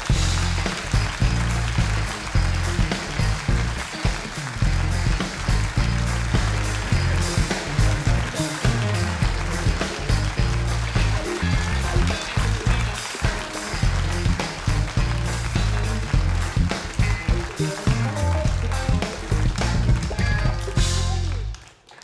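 Live house band of keyboards, guitar, bass and drums playing up-tempo walk-on music with a heavy, pulsing bass line, stopping abruptly near the end.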